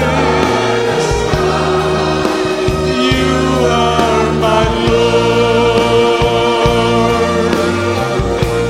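Church choir singing a gospel worship song with band accompaniment, long held voice notes over a steady bass line.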